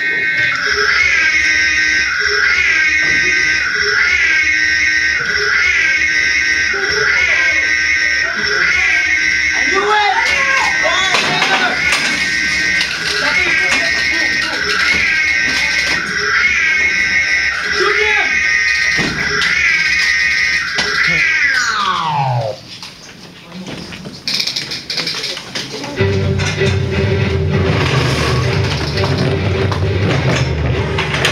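Alarm siren sounding in a repeating pattern, about one rising whoop a second, then winding down in a long falling glide and stopping a little over two-thirds of the way in. After a short lull a steady low hum with a held tone comes on.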